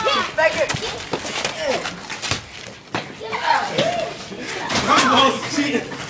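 Children's voices shouting and calling out over one another, with a few sharp knocks, the loudest about five seconds in.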